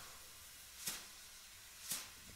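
Faint hiss of room tone, with two soft clicks about a second apart.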